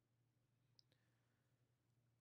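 Near silence, with one very faint click a little before the middle.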